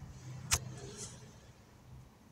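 A single sharp click about half a second in, over a faint low rumble, followed by a brief soft hiss.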